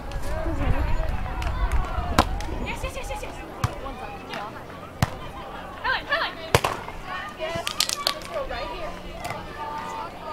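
Sharp slaps of hands and forearms striking a beach volleyball during a rally, four single contacts one to three seconds apart, under a murmur of voices.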